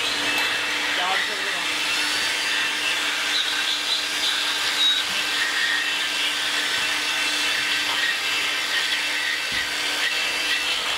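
A power tool's electric motor running steadily, with a constant whine over a hiss.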